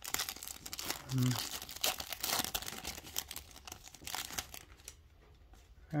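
Foil wrapper of a Panini Prizm football trading-card pack being torn open and crinkled by hand, a dense run of crinkling that eases off about four and a half seconds in.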